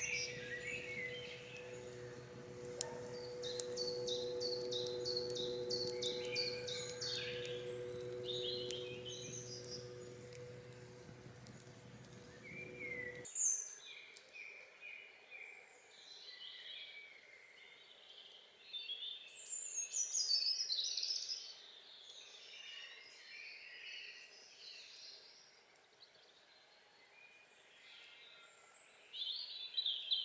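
Woodland songbirds singing and calling, with a quick repeated chirping phrase a few seconds in. A steady low hum underneath stops abruptly about thirteen seconds in.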